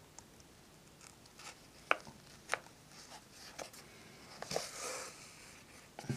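Faint hand-sewing sounds as a needle and thread are worked through a paper journal page: several light clicks and ticks, then a soft rustle of paper and thread a little before the end.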